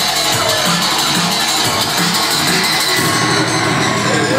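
Electronic dance music from a DJ set played loud over a club sound system, with a repeating bass beat; a denser bass line comes in about three seconds in.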